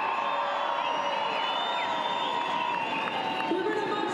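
A very large crowd cheering and shouting, many voices overlapping in a steady roar.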